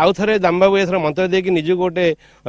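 A man speaking continuously to a news reporter's microphone; only speech.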